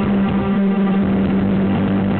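Live rock band playing, with a held low note droning steadily under electric guitar.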